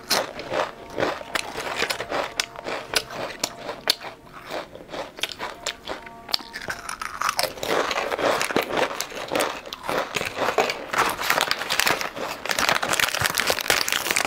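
Potato chips crunched and chewed close to the microphone, a long run of sharp crisp crunches. In the second half, plastic snack packaging crinkles as it is handled, making the sound denser.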